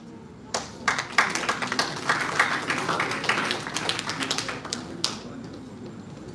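Audience clapping, individual claps audible in a scattered patter that starts about half a second in and dies away about five seconds in.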